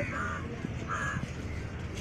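A crow cawing twice, short harsh calls at the start and about a second in, over steady low background noise.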